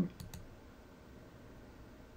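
Two quick clicks of a computer mouse button a moment in, then faint room tone.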